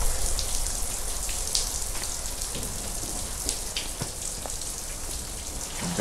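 Shower spray running steadily, with a low hum underneath.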